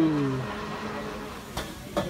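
A voice trailing off in the first half-second, then faint steady background noise with a soft click about one and a half seconds in.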